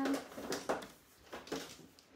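A few light clicks and taps from hands handling a small firecracker craft piece.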